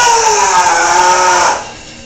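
A man's long, loud, wavering strained yell as he pulls a heavy barbell deadlift up from the floor. It cuts off about one and a half seconds in.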